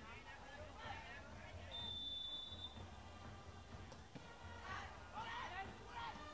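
A referee's whistle blown once, a steady high tone lasting about a second, signalling the free kick, over faint distant shouts from the pitch. A short faint knock follows about two seconds later.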